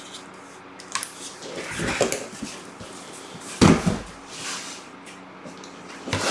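Cardboard boxes being handled and shifted: rustling and scraping around two seconds in, then a single heavy thump a little past halfway, the loudest sound.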